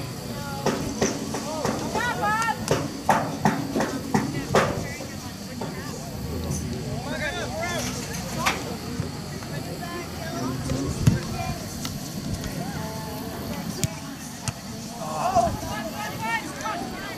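Distant, unintelligible shouts and calls from players and people along the touchline of a soccer field, coming in short bursts over a steady outdoor background.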